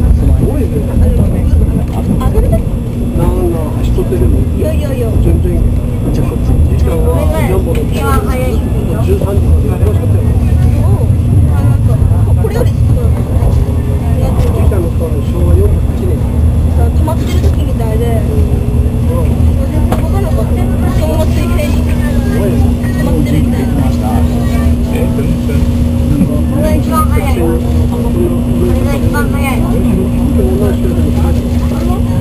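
Cabin noise inside a moving N700 series Shinkansen: a steady low rumble with a steady hum above it, and indistinct voices talking in the background.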